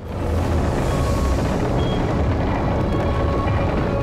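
Film soundtrack: dramatic music over a loud, dense, low rumbling noise that begins suddenly at the start.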